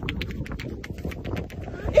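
Quick footsteps of sneakers scrambling over bare rock, a fast patter of about six or seven scuffs a second, with wind rumbling on the microphone.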